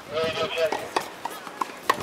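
Tennis ball struck by a racket on a grass court, two sharp pops about a second apart, the second one (a forehand) the louder. People talking nearby.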